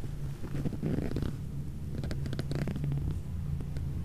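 A low steady hum in the room, with faint clicks and rustles of a handheld camera being moved.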